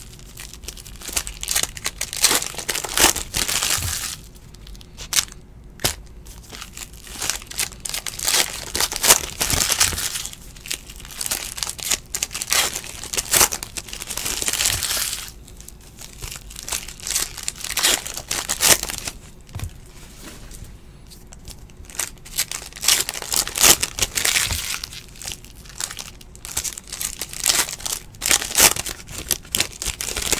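Foil trading-card pack wrappers crinkling and tearing as packs are ripped open by hand, with cards being handled in between. The sound comes in irregular bursts separated by quieter spells.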